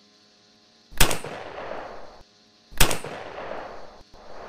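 Two gunshots about two seconds apart, the first about a second in and the second near the end. Each is followed by about a second of rushing noise that cuts off suddenly.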